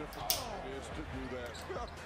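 Faint audio from a basketball highlight video: a voice over the game's court sound. A single sharp mouse click comes about a third of a second in, as the video player's quality settings are opened.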